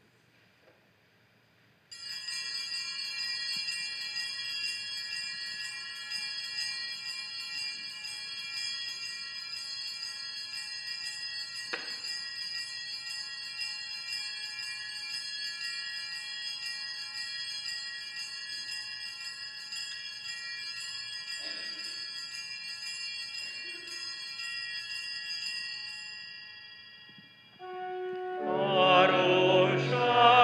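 Altar bells, a cluster of small hand bells, shaken continuously as a steady jingling ring that starts about two seconds in and fades out near the end. The ringing marks the blessing with the Blessed Sacrament in the monstrance.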